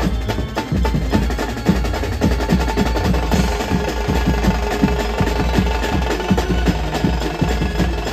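Mumbai-style banjo party band playing live: several drummers beating fast, dense rhythms on tom sets, steel drums and cymbals over heavy bass, with a held melody line above the drums.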